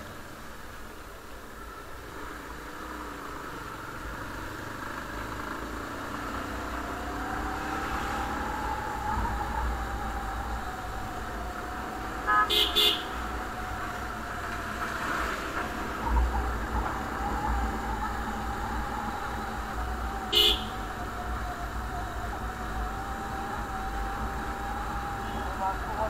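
Motorcycle engine running while riding, its note rising as the bike speeds up over the first several seconds and then holding steady, over a low wind rumble. The horn sounds in a quick burst of short beeps about halfway through and once more, briefly, some eight seconds later.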